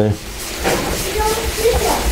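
A rag scrubbing back and forth over a wet, rusty steel sheet, a steady rubbing hiss. Faint children's voices can be heard in the background.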